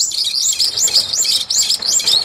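Brown-eared bulbul calling: a rapid, loud run of short, high, rising-and-falling chirps, about five a second.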